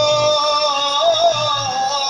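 Live Bengali devotional kirtan: a long held note over a sustained drone, with a steady drum beat underneath. About halfway through the voice wavers and slides down to a new note.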